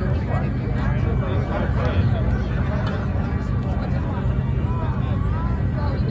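Spectators talking at the grandstand rail over a steady low rumble of race-car engines running on the track.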